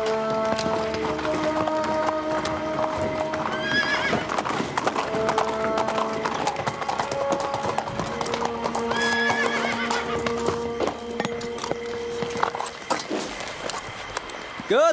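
Horses' hooves clip-clopping on stone paving, with a horse whinnying twice, about four and nine seconds in, over background music of held notes.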